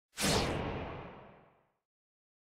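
A single whoosh sound effect for an animated intro logo: it starts suddenly and fades away over about a second and a half.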